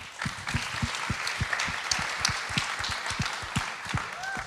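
Audience applauding, thinning out near the end.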